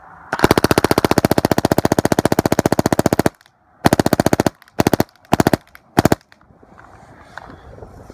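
Angel A1 electropneumatic paintball marker firing in rapid strings: one long burst of many shots a second lasting about three seconds, then four shorter bursts, each ending abruptly.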